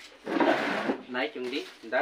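Stiff green coconut palm leaflets rustling and scraping against each other as a half-woven palm-leaf hat is handled, one loud burst of under a second.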